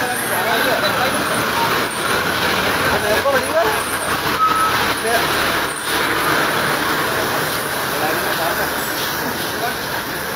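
People talking at a roadside over steady street traffic noise.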